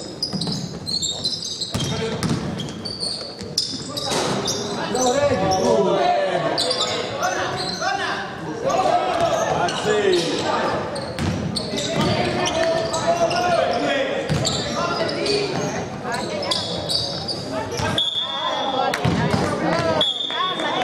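Basketball game sounds in an echoing gym: the ball bouncing on the hardwood court and players' voices calling out. Near the end there is a short, steady high whistle.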